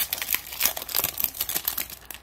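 Wrapper of a 2021 Bowman Chrome baseball card pack crinkling and tearing as it is pulled apart by hand, a dense run of small irregular crackles.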